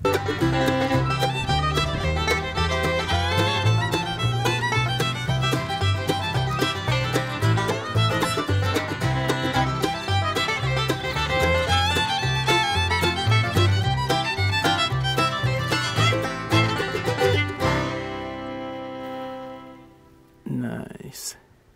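Background instrumental music in a bluegrass style, fiddle and banjo over a steady beat. It ends on one held chord that fades out near the end.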